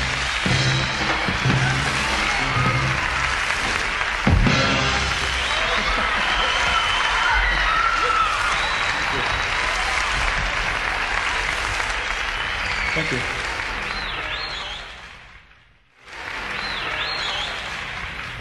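A live band and orchestra finish a song with a final hit about four seconds in, then an audience in a hall applauds and cheers. The sound drops almost to nothing about sixteen seconds in, a break in the tape, and the applause comes back.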